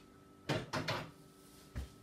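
Two knocks from kitchen items being handled: a sharp knock about half a second in and a duller thump near the end.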